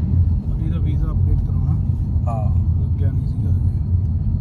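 Steady low rumble of a car driving, heard from inside the cabin, with faint voices over it.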